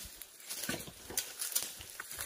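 Footsteps rustling and crackling in dry leaf litter and twigs, a scatter of irregular crunches.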